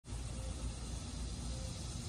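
Steady, fairly quiet background rumble with no distinct event, its energy mostly low in pitch.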